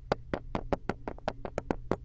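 Rapid series of sharp taps, about six a second, as marshmallows and black chunks drop one after another into a glass shot glass, over a low steady hum.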